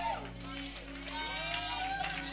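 Indistinct voices with long, drawn-out sounds rather than clear words, over low, steady background music tones.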